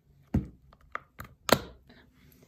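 Clear plastic phone case being snapped onto an iPhone: a quick series of about six sharp clicks and knocks, the loudest about one and a half seconds in.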